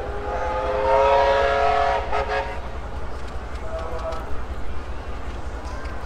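A loud multi-tone whistle blast lasting about two and a half seconds, rising slightly as it starts, over the steady low rumble of a Chieftain tank's engine running.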